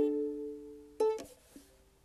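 Closing chords of a strummed acoustic string instrument: a chord rings and fades, then a final chord about a second in is struck and quickly damped, an abrupt ending to the song.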